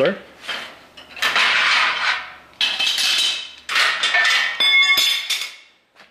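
Steel locking C-clamps being taken off an angle-iron frame and dropped onto a concrete floor: about five sharp metal clanks, each ringing briefly, the loudest near the end.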